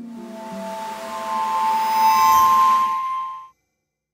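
Shimmering logo sound effect: a few sustained bell-like tones over a rising hiss that swells, peaks about two seconds in, and cuts off abruptly about three and a half seconds in.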